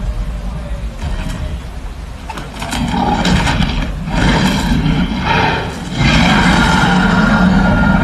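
Dinosaur sound effects played through large outdoor loudspeakers for a Giganotosaurus screen display. A deep rumble builds into surging growls from about three seconds in, then becomes a long, loud roar over the last two seconds as the creature opens its jaws.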